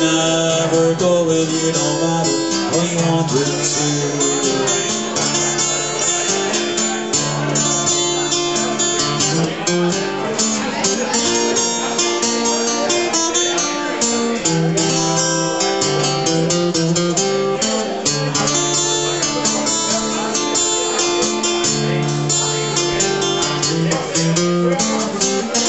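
Acoustic guitar played solo in an instrumental break, steady strummed chords with a regular rhythm.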